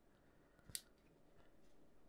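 Near silence: room tone, broken by one faint, short click about three quarters of a second in.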